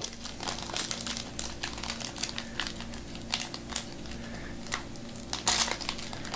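Trading-card pack wrapper crinkling and crackling in irregular bursts as hands work it open, over a faint steady hum.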